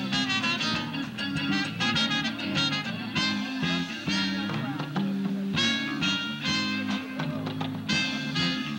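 A live band plays an upbeat number through PA speakers. A saxophone plays a lead of quick repeated notes over electric and acoustic guitars and a steady bass line.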